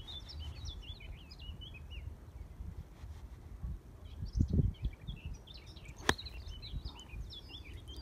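A single sharp click about six seconds in as a 9-iron strikes a golf ball out of a sand bunker, a strike called heavy, over birds chirping steadily and a low wind rumble on the microphone. A low thud comes a little before the strike.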